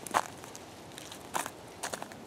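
Footsteps on snow: three separate steps.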